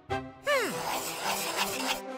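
Cartoon sound effects over background music: a short falling tone about half a second in, then a scratchy rubbing noise of a pencil eraser scrubbing something out on paper.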